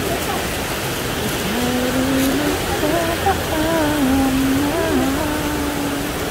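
Heavy rain falling steadily on a paved street, an even hiss throughout, with a person's voice carrying over it in drawn-out, wavering tones.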